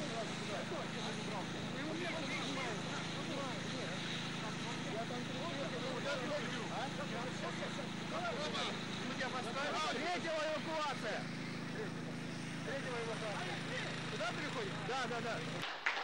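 Many voices of the recovery crew overlapping in a jumble of talk and calls, over a steady low engine hum.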